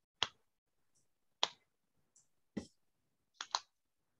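Computer mouse clicking: single sharp clicks about a second apart, then a quick double click near the end.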